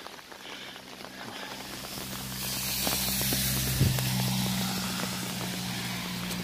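A motor vehicle's engine hum that builds, peaks in the middle with a rushing hiss, and eases off, with footsteps on a wet dirt trail.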